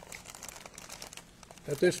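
Paper rustling and crinkling close to a lectern microphone, a scatter of small crackles, before a man starts to speak near the end.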